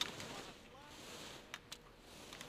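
A faint voice calling out on the slope, with a few sharp clicks: one at the start and two about a second and a half in.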